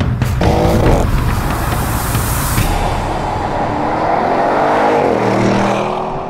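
Audi RS 7's twin-turbo V8 engine revving: a short rev about half a second in, then a longer run whose pitch rises and then falls near the end. Trailer music with a drum beat plays under it and fades out in the first few seconds.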